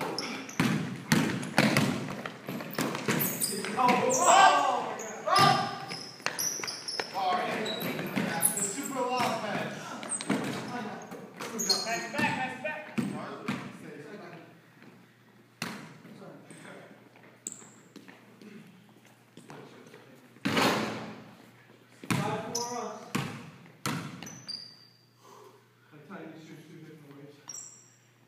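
Basketball bouncing and thudding on a hardwood gym floor during a pickup game, with players' voices and shouts in the large, echoing hall. The sharp bounces come thick and fast for the first half, then thin out.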